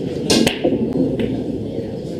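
A 9-ball break shot: the cue drives the cue ball into the rack with a loud crack about a third of a second in, and the balls scatter, with two lighter clicks of balls hitting each other soon after. There is steady room noise underneath.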